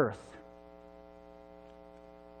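A man's spoken word ends in the first half-second, leaving a low, steady electrical mains hum of several even tones.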